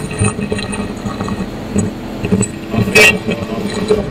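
Workshop handling noise: small knocks and clicks, with one sharp metallic clink about three seconds in.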